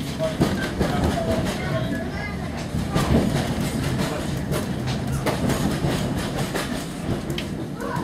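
Heritage railway carriage running at speed, heard from inside: a steady rumble of wheels on track with irregular clicks as they cross rail joints.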